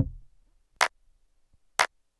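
Background music thinning to its beat alone: a held chord fades away at the start, then two sharp ticks about a second apart keep time before the music comes back in.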